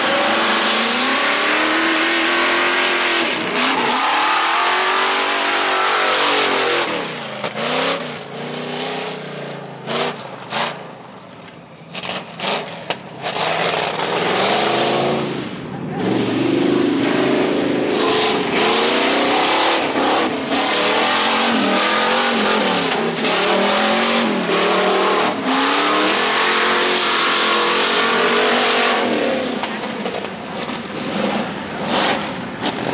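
Off-road race buggy engines revving hard, the pitch climbing and dropping over and over with throttle and gear changes as the buggies drive through mud. The engine sound fades for several seconds midway, then returns loud.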